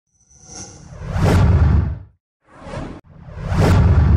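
Whoosh sound effects for an animated logo intro: rushing swells with a deep rumble underneath. A big one builds and dies away by about halfway through, a short, weaker swish follows, and a third swell builds to full loudness near the end.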